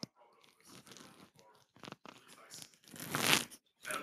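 A person sipping from a cup, with rustling and handling noise close to the microphone, loudest about three seconds in.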